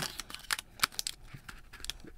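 A protective phone case with a hard frame and a leather-look back being pressed onto the back of a smartphone: a string of irregular small clicks and rubbing as the frame edges are worked over the phone.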